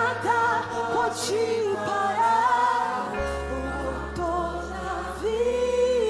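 A woman singing a Portuguese-language gospel worship song into a microphone, with vibrato, over a sustained low accompaniment; near the end she holds one long note.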